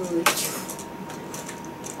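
Plastic LEGO pieces being handled: one sharp clatter about a quarter second in, then faint small clicks.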